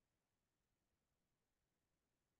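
Silence: the audio track is essentially empty, only a faint even noise floor.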